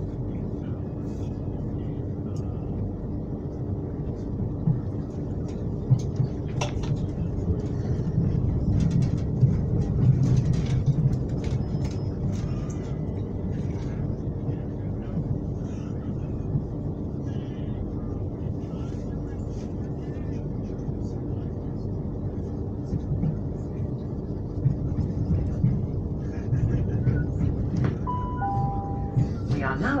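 Electric commuter train running, heard from inside the carriage: a steady low rumble of wheels on rails with a faint hum and a few clicks. Near the end, a two-note falling chime from the train's PA, the signal that an on-board announcement follows.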